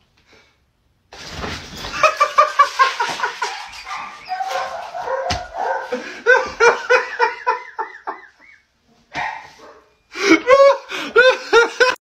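German Shepherd giving a quick run of short, high-pitched barks and yelps in two bouts, the second starting about ten seconds in.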